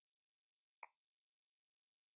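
Near silence, broken by one faint, short pop about a second in.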